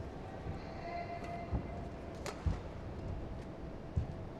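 Indoor badminton arena ambience between rallies, with a few soft low thuds and one sharp click a little over two seconds in.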